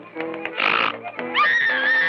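Early sound-cartoon music score with held notes. About halfway in there is a short, noisy, growl-like burst, and near the end a high tone that slides up and then wavers.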